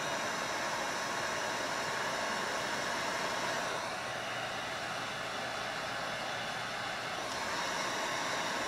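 Electric heat gun blowing steadily while it shrinks the heat-shrink sleeve of a female blade connector onto a wire, its air noise easing slightly about four seconds in before picking up again near the end.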